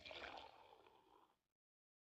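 Faint cartoon sound of beer gurgling out of a wooden barrel's tap into a stein, fading away about a second in.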